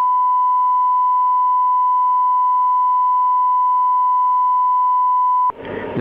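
Broadcast programme-signal test tone: a single steady, pure beep that cuts off about five and a half seconds in, just as a recorded voice announcement starts.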